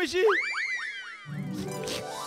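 Cartoon-style comedy sound effect: a quick run of about seven whistle-like glides, each shooting up and sliding back down. Music comes in under it a little past halfway.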